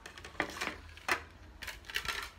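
Stacked plastic plates being handled, knocking together in a few light, sharp clicks: one about half a second in, another at about a second, and a quick cluster near the end.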